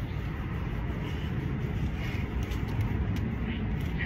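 Steady low rumble of outdoor urban background noise.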